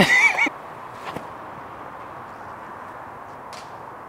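A woman laughing in the first half-second, then quiet outdoor ambience with a faint click about a second in and another near the end.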